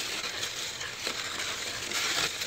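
Snow shovel blade pushing and scraping a thin layer of snow across pavement, a steady scrape with a couple of faint knocks.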